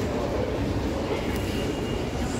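Escalator running with a steady low mechanical rumble, amid the general noise of a large shopping mall.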